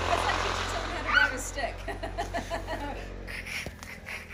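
Honda snow bike's engine running as a low, steady hum that stops about three and a half seconds in, with a voice rising over it about a second in and brief vocal sounds after.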